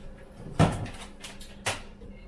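Two short knocks about a second apart, the first the louder, from things being handled at a kitchen counter.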